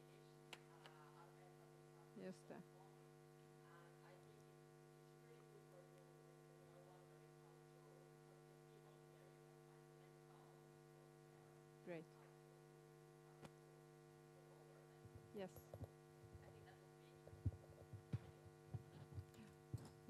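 Near silence with a steady electrical mains hum from the audio feed. Faint scattered sounds come now and then, more of them in the last few seconds.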